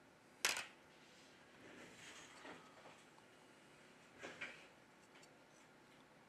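Quiet handling of a smartphone motherboard as it is lifted out of the phone's frame: a sharp click about half a second in, a soft rustle, then another small click a few seconds later.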